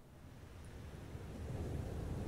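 Sound of surf on a shore fading in, a low, even wash of water noise growing steadily louder.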